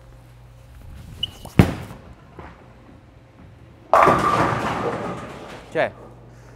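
A bowling ball is laid down on the wooden lane with a sharp thud, rolls away, and a little over two seconds later crashes into the pins with a loud clatter that dies away over about a second and a half.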